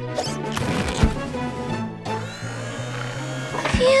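Cartoon background music with a magic transformation sound effect: a burst of clattering, whooshing noise with a sharp hit about a second in, then slowly falling glides, and a thump near the end followed by a child's laugh.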